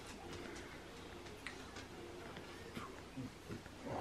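Quiet chewing of a crisp, crusty slice of homemade pizza: a few faint crunching clicks, with some short, soft low hums.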